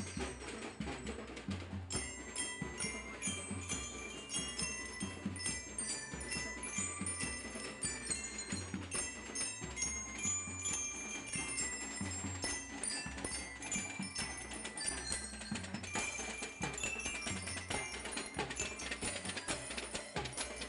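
School drum and lyre corps: marching bell lyres play a melody in quick, bright struck notes over a steady drumbeat.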